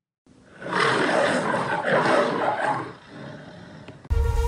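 A lion's roar, rising after a moment of silence, holding for about two seconds and then dying away.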